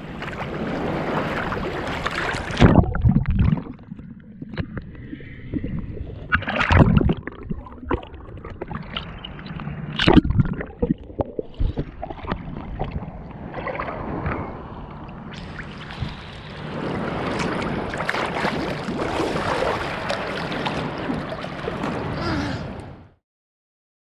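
Seawater sloshing and splashing against an action camera held at the waterline, with sharp knocks as waves hit the housing. The sound turns muffled and gurgling for much of the middle as the camera dips under, and opens out again a few seconds before the end.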